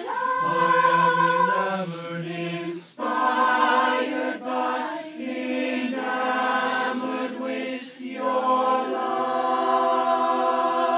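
A cappella choir of high-school singers singing a song together, with no instruments. The sung phrases are broken by brief pauses a few times.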